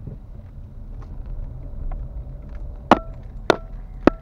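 Low, steady rumble of a car on the move, with two sharp knocks near the end, each leaving a short ringing tone.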